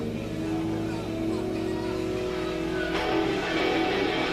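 Amplified electric guitar sustaining a droning note through the amp on stage, which PANN hears as engine-like. The sound swells and gets brighter about three seconds in, as the playing picks up.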